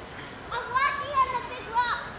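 A child's high-pitched voice calling out, starting about half a second in and breaking off near the end, over a steady faint high-pitched drone.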